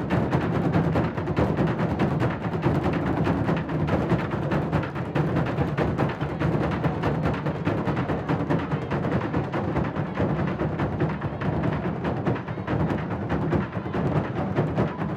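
San Juan festival drums, many played at once with wooden sticks, beating an unbroken rhythm of dense, continuous strikes.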